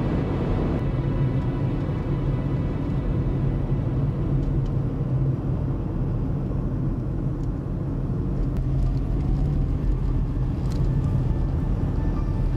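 A car driving, heard from inside the cabin: a steady low rumble of engine and tyres on the road. Faint music fades out at the start and comes back in near the end.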